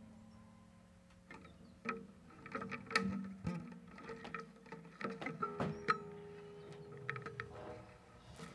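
Acoustic guitar played softly: single fingerpicked notes that start about two seconds in, each left to ring out.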